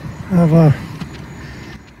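A man's voice saying a short word or two, over a steady low background rumble.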